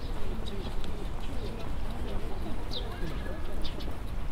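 Small birds giving short, high chirps several times, one of them a quick falling note near the end, over a murmur of distant voices and a steady low rumble of outdoor background noise.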